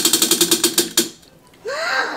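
Tabletop prize wheel spinning, its flapper clicking rapidly against the rim pegs, then stopping about a second in. A rising voice-like exclamation follows near the end.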